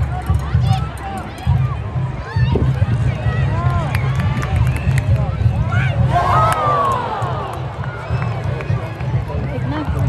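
Stadium crowd at a soccer match: scattered shouts and calls from many spectators, rising to a louder burst of shouting and cheering about six seconds in as a shot goes in on goal. A steady low rumble runs underneath.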